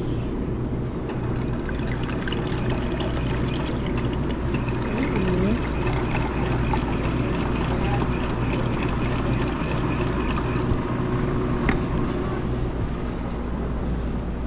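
Juice dispenser pouring a stream of orange juice into a plastic cup for several seconds in the middle, over a steady low machine hum.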